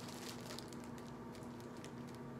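Faint, intermittent crinkling and light ticks of a clear plastic package being handled and turned over in the hands.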